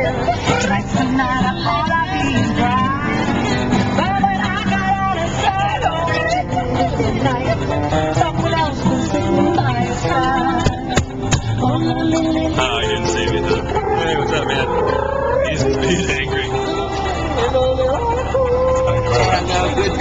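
A car radio playing music with singing and voices, heard in the cabin of a moving car over a steady low rumble of road and engine noise.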